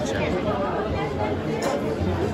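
Speech and chatter: people talking in a busy indoor hall.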